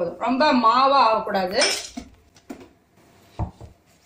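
A woman talking for about the first two seconds, then a few short, separate clinks of kitchen utensils against dishes as ingredients are handled.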